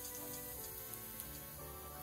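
Quiet sizzle of minced garlic frying in olive oil in a frying pan, under soft background music with held notes.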